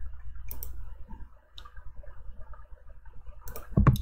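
A few isolated clicks from a computer mouse and keyboard, spaced out, over a steady low hum.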